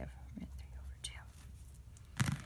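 Faint scratching of a pen writing on paper, over a low steady hum.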